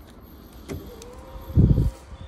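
Skoda estate's electric power tailgate motor running with a steady hum as the tailgate moves, after a click about half a second in. A loud low thump comes near the end.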